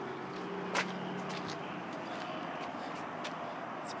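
A steady low mechanical hum with a faint even drone, and one short click about a second in.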